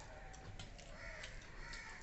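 A crow cawing twice, faintly, about a second in and again shortly after, with small scattered clicks of hands working rice on steel plates.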